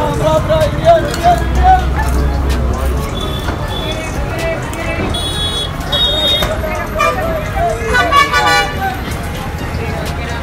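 Busy bus station din: crowd chatter over the low rumble of bus engines, with vehicle horns tooting, the longest horn blast about eight seconds in.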